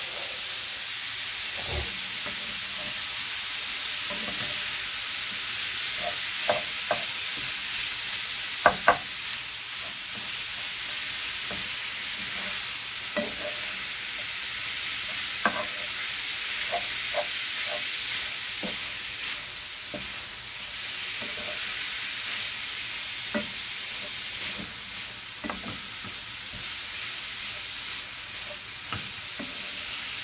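Minced beef and red pepper strips sizzling steadily in a non-stick frying pan, stirred with a wooden spatula that knocks and scrapes against the pan now and then; a pair of sharp knocks about nine seconds in is the loudest.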